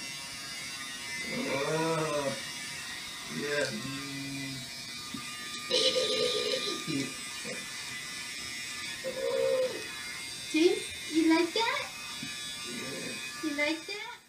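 Electric hair clippers buzzing steadily at a toddler's head, with voices over the buzz, heard through a television's speaker. The buzz cuts off suddenly near the end.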